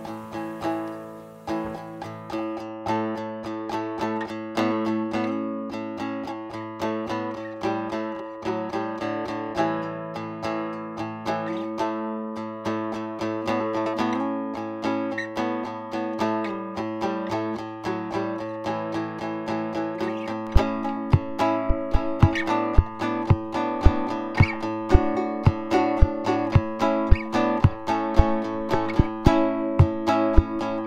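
A multitracked tune in A played on a three-string cigar-box guitar: plucked lead notes over a low bass line played on the same instrument with its strings slackened an octave. About twenty seconds in, a percussion part tapped on the cigar box itself joins at about two hits a second.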